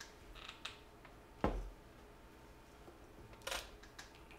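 Quiet handling sounds at an electronics repair bench as multimeter test leads are picked up: faint ticks early on, one sharp click about one and a half seconds in, and a brief hiss near the end.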